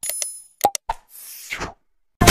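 Animated subscribe-button sound effects: a short bright ring at the start, then two sharp pops about half a second later, and a soft whoosh near the end.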